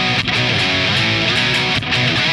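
Distorted electric guitar on a Fender Telecaster playing a chord riff, the chords changing every fraction of a second, with a brief break near the end.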